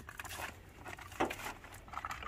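Light handling noises as a bungee cord is stretched from a tarp grommet and hooked at a car's wheel well: rustling and a few soft knocks and clicks, the loudest a little over a second in.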